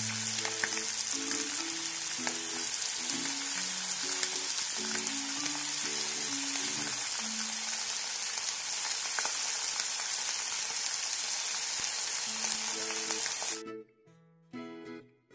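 Cornflour-coated chicken pieces deep-frying in hot oil: a steady sizzle that cuts off suddenly near the end. Quiet background music plays beneath it.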